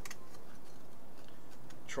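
A few faint light ticks in the first half second as a steel ruler and craft knife are set down on a cutting mat, over a steady background hiss.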